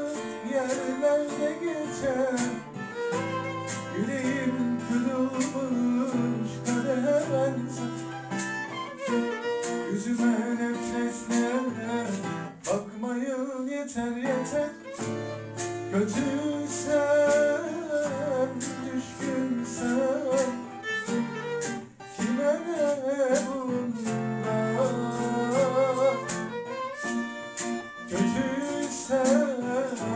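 Live acoustic music: a steadily strummed acoustic guitar and a violin accompany singing into a microphone.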